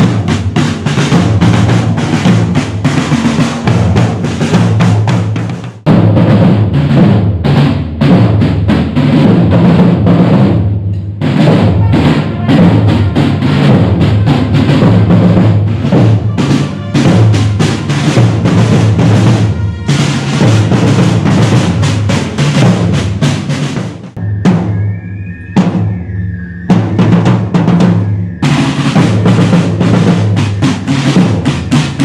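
A corps of marching drummers playing side drums with sticks: many drums beating together in a dense, steady cadence. The drumming thins briefly a few seconds before the end, then picks up again.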